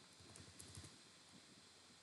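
Near silence with faint room hiss, broken in the first second by a quick run of soft keyboard key clicks as a PIN is typed in.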